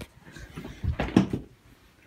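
Rustling and soft thumps from a handheld phone being jostled, with a cluster of knocks about a second in.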